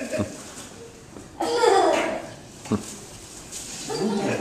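A short voice exclamation with a falling pitch about a second and a half in, from someone watching, plus two light knocks, one near the start and one past the middle.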